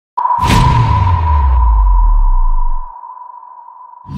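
Logo-intro sound effect: a sudden whoosh-like hit about half a second in, with a deep bass rumble that fades out near three seconds, over a steady high ringing tone.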